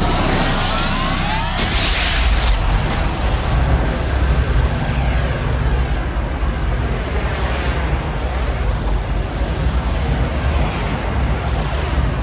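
Sci-fi sound-design effect: a continuous deep rumble with whooshing sweeps that rise in pitch over the first second or so, and a burst of hiss about two seconds in, then a churning rumble that carries on.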